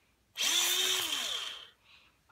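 Electric pencil sharpener's motor whirring and grinding a wooden pencil for about a second and a half, starting a third of a second in; its pitch falls as it winds down near the end.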